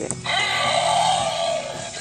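Electronic sound effect from a Ghostbusters Slimer toy, set off by its try-me button. It plays as one sustained cry of about a second and a half through the toy's speaker.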